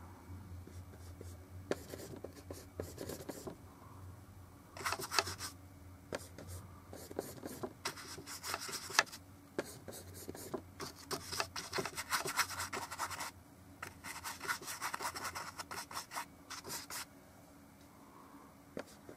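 Paintbrush scrubbing oil paint, in bursts of quick short strokes separated by brief pauses.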